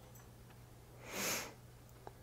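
A single short breath drawn in through the nose, a sniff lasting about half a second, about a second in, over a faint steady low hum.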